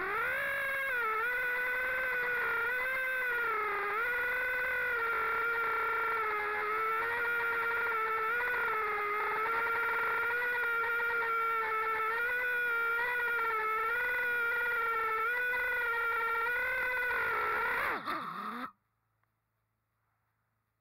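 Brushless motors and propellers of a 5-inch FPV quadcopter heard through its onboard camera: a steady whine whose pitch wavers gently with throttle. Near the end the pitch drops briefly and the sound cuts off suddenly as the motors stop.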